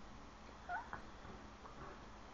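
A baby's short, high-pitched squeal with a wavering glide, about a second in.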